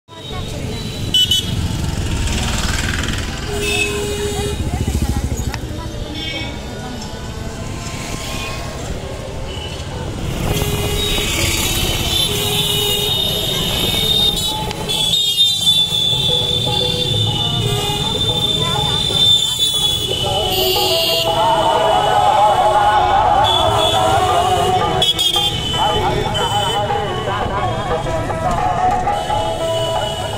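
Busy town-street traffic heard from a moving rickshaw: vehicle horns honking again and again over the noise of motorbikes and other traffic, with voices of people in the street.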